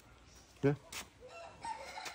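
A rooster crowing once, faint, in the second half.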